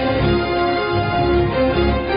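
News-programme opening theme music: held notes stepping from one pitch to the next over a continuous bass.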